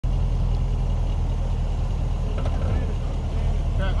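Range Rover Sport engine running at low revs with a steady low rumble as the SUV crawls slowly through a ditch.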